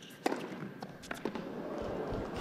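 Tennis ball struck by rackets during a rally: a few sharp knocks, the loudest about a quarter-second in and lighter ones around a second in.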